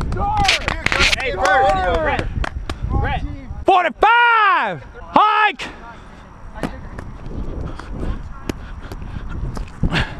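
Men's voices shouting and calling out across the field with no clear words. The loudest is one long drawn-out yell about four seconds in, rising then falling in pitch, followed by a short shout. After that the sound drops to quieter outdoor noise with a few scattered light thumps.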